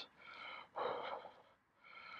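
A man breathing hard through an open mouth: a faint breath, then a louder one about a second in, and a faint one at the end, as he reacts to the burn of a very hot chili.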